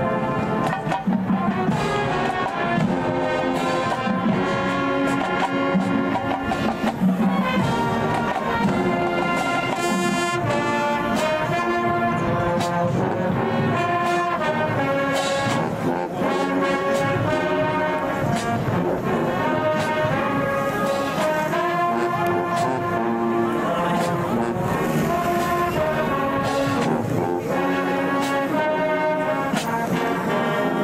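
A high school marching band playing with the brass section leading. Sustained brass chords shift every second or so, with a few sharp percussion hits cutting through.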